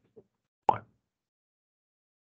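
A single short spoken word from a man, "one", with silence around it.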